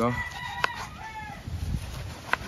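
A rooster crowing: one long held note and then a shorter falling one. A knife taps once on a plastic cutting board partway through.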